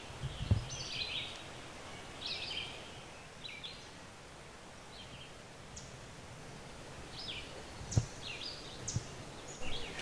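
Woodland songbirds chirping: short, high calls scattered every second or so. Two soft low thumps come near the start and about eight seconds in.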